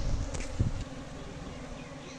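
Buzzing of a honeybee swarm crowding and flying about the entrance of a wooden box hive as the bees move in. A low rumble with a couple of knocks sits under the buzzing in the first second.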